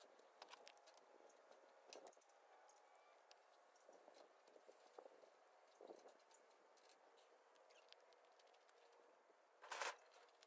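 Near silence: faint scattered clicks and rustles of hand weeding in mulch and the handling of a trigger sprayer, with one brief louder rustle just before the end.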